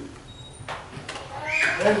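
A man's voice in a sermon: a brief pause with a breath, then the start of a spoken "Amen" near the end.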